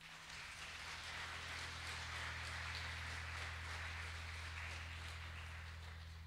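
Faint applause from a congregation, starting just after the song ends, holding for a few seconds and then slowly dying away, over a steady low electrical hum.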